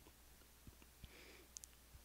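Near silence, with a few faint clicks from fingers handling a 1:64 scale diecast model truck.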